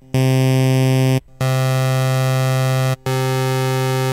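Native Instruments Massive software synthesizer playing a bright sawtooth tone as three held notes of a second or so each, all at the same low pitch, with short breaks between them.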